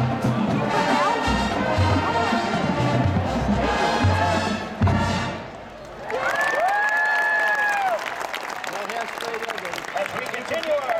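Marching band brass and drums playing the end of a tune, closing on a final hit about five seconds in. The crowd then cheers and applauds, with one long high call that rises, holds and falls.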